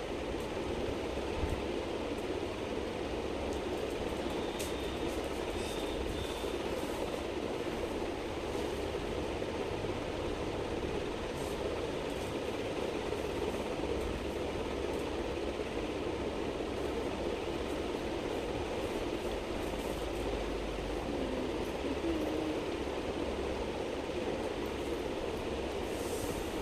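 Steady background noise, an even rumble and hiss with no speech, holding level throughout, with a couple of faint ticks.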